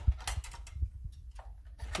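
Light metal clicks and knocks from the staple head of a Rapid 106 electric stapler being pulled out and turned over by hand. The sharpest click comes just after the start, followed by a few fainter taps.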